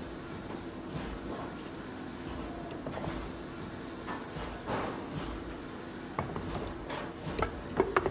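Pottery factory work sounds: a steady hum with a few knocks and clatters, most of them in the last two seconds.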